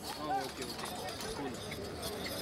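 Men shouting short calls to urge on a pair of Ongole bulls hauling a stone sled, over a busy mix of crowd noise.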